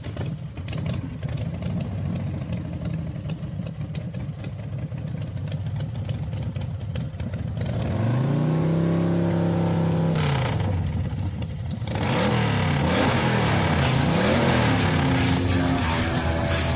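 A vehicle engine, used as a sound effect at the head of a track. It runs roughly at a low, pulsing idle, is revved up and held for about two seconds around the middle, and from about three-quarters through is revved up and down several times.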